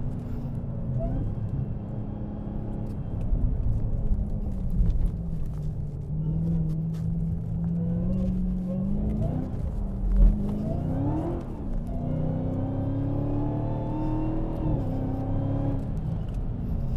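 800-horsepower Dodge Challenger's supercharged V8 pulling hard at speed. Its note climbs steadily under throttle and falls back abruptly several times, at shifts or lifts.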